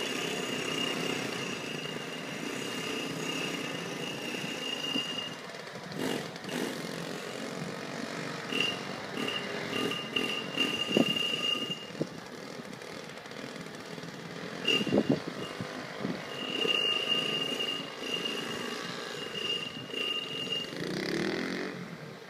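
Several mopeds running as a group rides off down the street, their engine sound fading as they move away.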